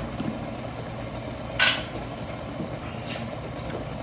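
A steady low mechanical hum in the kitchen, with one short clatter of kitchenware about a second and a half in as the French press lid and spoon are handled.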